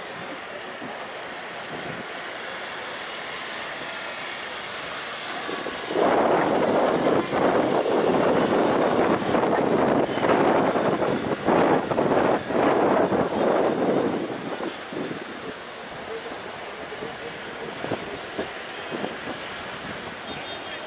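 Outdoor city-square ambience with a steady traffic hum. About six seconds in, a loud rough rushing noise swells up, lasts roughly eight seconds, then dies back to the background hum.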